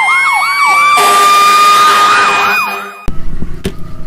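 Fire engine sirens: a fast electronic yelp repeating about two and a half times a second over a steady wail that slowly rises in pitch. About a second in, a loud hissing blast joins them for nearly two seconds, and everything cuts off abruptly near three seconds.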